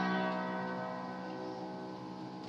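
Upright piano's last chord ringing out and slowly fading away.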